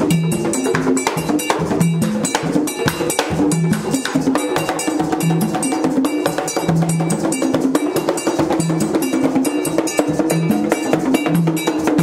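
Haitian Vodou drum ensemble: tall hand drums played in a fast, steady rhythm, with a metal bell struck on every beat over repeated low drum notes.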